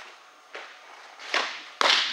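Windmill softball fastball: a brushing swish of the delivery about midway, then a sharp, loud smack near the end as the ball pops into the catcher's mitt, ringing briefly in the netted cage.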